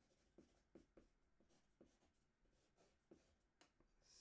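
Very faint scratching of a pencil drawing on paper, a string of short, irregular strokes.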